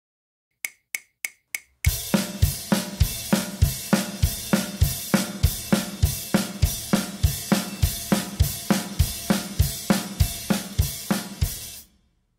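Drum kit: four sharp clicks in quick succession count in a fast, dense drum beat. The beat has a continuous cymbal wash and a bass-drum accent about three times a second, and it cuts off suddenly near the end.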